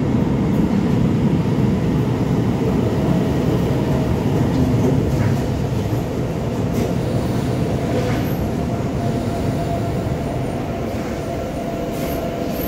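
Tyne and Wear Metro train pulling into an underground station platform and running past, with a faint steady whine over the running noise. It slows and gets gradually quieter through the second half.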